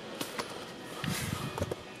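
Soft rustling and handling of paper as a car's service book and papers are moved about.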